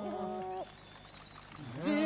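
Albanian Lab men's polyphonic choir singing over a held drone (iso). The phrase breaks off just over half a second in, and after a short pause a voice slides up from low pitch into the next phrase, with the drone and upper parts coming in together near the end.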